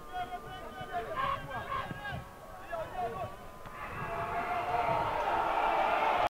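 Stadium crowd at a football match: scattered voices and shouts, then crowd noise that swells steadily louder over the last two seconds as an attack closes on goal.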